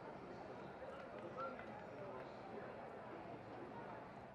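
Faint, indistinct voices of people talking in the background over a low steady murmur, with a slightly louder voice about a second and a half in.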